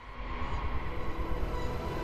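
Trailer sound-design swell: a dense rumbling drone with faint steady tones, growing steadily louder as tension builds.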